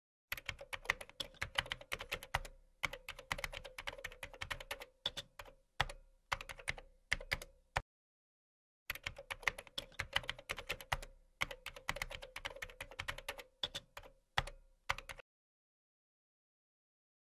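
Fast typing on a computer keyboard, the keys clicking in two long runs with a pause of about a second between them. It stops about a second before the end.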